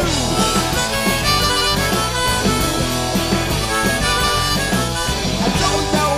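Harmonica solo played into a vocal microphone, with held notes over a live garage rock band of electric guitars, bass and drums.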